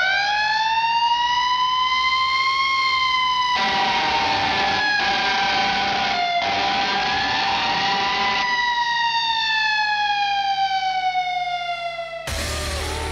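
Wind-up siren sound effect: its single wailing tone climbs steeply just at the start, holds and wavers for several seconds, then slowly winds down near the end. A rushing hiss joins in over the middle for about five seconds.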